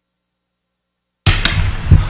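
Dead silence for just over a second, then a live desk microphone cuts in suddenly, picking up low rumbling handling noise and a few thumps, the loudest near the end.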